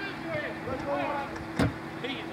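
Shouting voices of footballers and onlookers at an outdoor Australian rules football match, with one sharp thud about one and a half seconds in.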